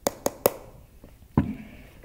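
Hands handling and tapping the plastic shell of a night light: three quick sharp taps at the start, then a duller knock about a second and a half in.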